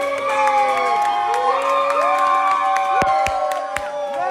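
Small audience cheering and whooping, several voices holding long drawn-out shouts that overlap, with scattered claps and a few sharp knocks near the end.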